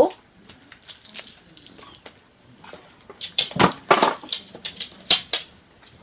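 Plastic toy packaging crinkling and crackling as it is handled and torn open, in a run of sharp rustles about halfway through.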